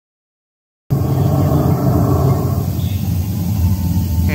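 Deep, low rumbling growl of an animatronic Tyrannosaurus, played through loudspeakers, starting about a second in and running loud and steady.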